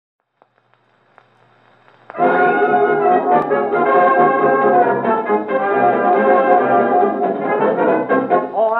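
A 78 rpm shellac record played acoustically on a 1926 Victor Credenza Orthophonic Victrola with a steel needle: a few faint needle clicks and surface hiss in the lead-in groove, then about two seconds in a 1929 dance band's brass-led fox-trot introduction starts loud.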